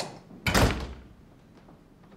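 Apartment front door being shut: a sharp click, then about half a second in a loud, heavy thud that dies away quickly.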